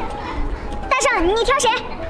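Women's high-pitched voices exclaiming and chattering, starting about a second in, over low outdoor background noise.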